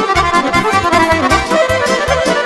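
Accordion playing a fast folk dance tune over a steady bass-and-drum beat of about four beats a second.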